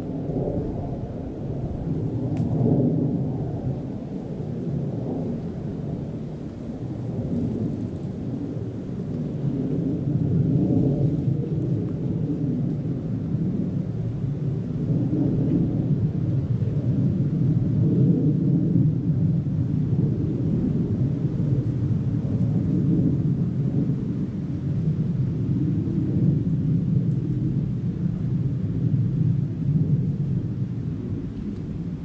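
Wind buffeting the microphone: a low, uneven rumble that swells and eases, louder in the second half.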